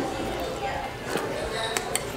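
Background chatter with a few sharp clicks, one a little past the middle and two near the end: metal spoons knocking against glass sundae bowls.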